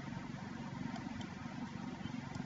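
Low, steady background hum and rumble with no distinct events.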